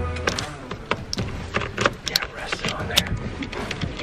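Scattered light clicks and knocks of handling and movement inside a hunting blind, as the rifle and gear are shifted at the window.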